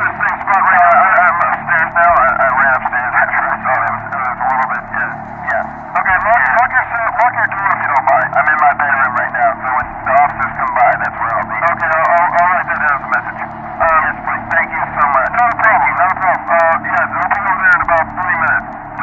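Continuous speech with the thin, narrow sound of a telephone line: an emergency call between a caller and a dispatcher. A faint steady music bed runs underneath.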